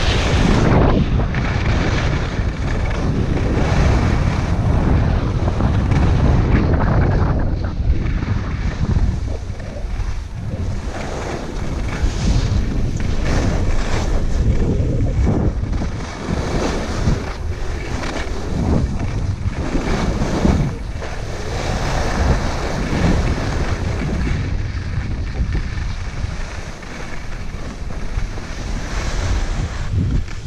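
Wind buffeting the microphone of a skier's camera during a downhill run, over the scrape and hiss of skis on packed snow that swells with each turn.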